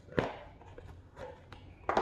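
Small product packaging being handled: a sharp click about a fifth of a second in, a few faint ticks, then a loud rustle near the end.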